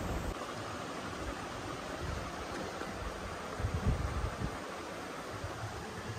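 Steady, even hiss of room noise, with a few soft low bumps about four seconds in.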